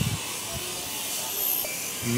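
Steady background hiss between spoken phrases, with no distinct event standing out.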